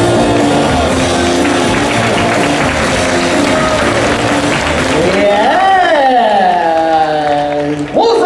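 Hip-hop dance music from the sound system with audience applause and cheering as the routine ends, followed over the last three seconds by one long drawn-out voice call that rises and then falls.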